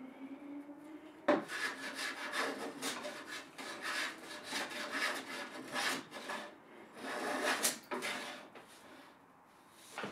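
Metal hand plane shaving the top edge of a timber bench frame in a run of short, quick strokes that start about a second in and stop about eight seconds in. The planing levels mismatched horizontal timbers to flatten the frame top.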